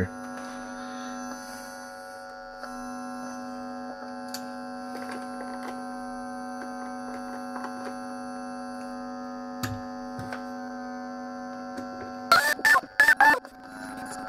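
Steady electrical hum with a buzzy stack of overtones, as from an amplifier with the half-assembled electric guitar plugged in, its pickups and wiring exposed. There are faint clicks and taps of handling, and a short run of louder sounds near the end.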